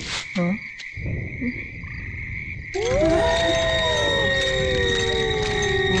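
Film soundtrack: a night-time chorus of insects with a steady high chirping. About halfway through, louder music comes in, with long sliding tones that slowly fall in pitch.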